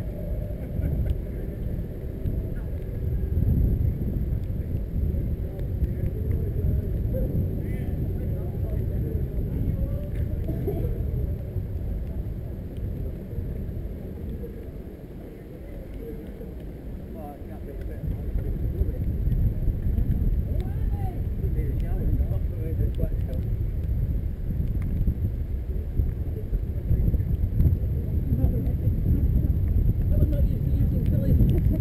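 Wind rumble on a bicycle-mounted camera's microphone while riding, mixed with tyre noise on a wet road. It eases off briefly about halfway through, then picks up again.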